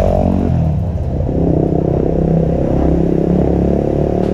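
Yamaha WR250R dual-sport motorcycle's single-cylinder engine as the bike rides past close by and on up the lane, its pitch shifting as it goes.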